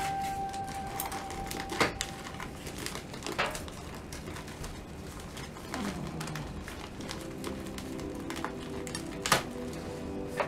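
Background music with held notes, and a few sharp crinkles of clear plastic wrap being peeled off a bandaged foot by gloved hands. The loudest crinkle comes near the end.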